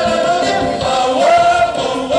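Live band music with several voices singing together in sustained, gliding notes, recorded from the audience.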